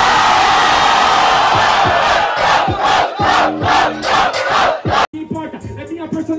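Rap-battle crowd shouting and cheering loudly after a punchline. After about two seconds the shouting falls into a rhythm of about three beats a second. It breaks off abruptly near the end.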